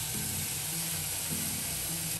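Steady sizzling hiss of food frying in a pan, with quiet background music underneath.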